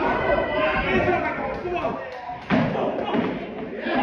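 Boxing-glove punches landing with thuds during an amateur bout, the loudest a single sharp thud about two and a half seconds in, over ringside voices shouting.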